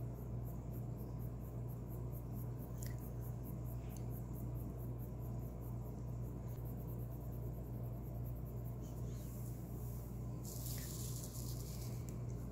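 Colored pencil scratching on paper in small, quick strokes, faint ticks of about four to five a second, over a steady low hum.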